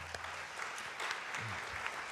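An audience applauding steadily at the end of a lecture.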